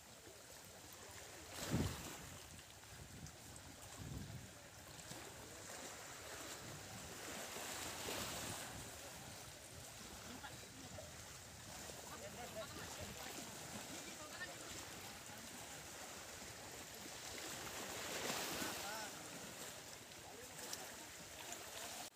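Shallow seawater sloshing and lapping around people wading, under a steady outdoor wash of noise and faint voices. A single sharp thump about two seconds in is the loudest sound.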